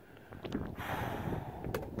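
Gusty wind buffeting the microphone, an uneven low rumble and hiss that swells about half a second in, with a couple of faint clicks.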